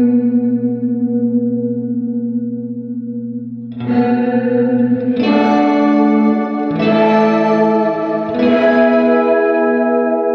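Electric guitar chords played through a Catalinbread Cloak reverb pedal: one chord rings out and slowly fades, then four new chords are struck about every second and a half, each leaving a long reverb wash.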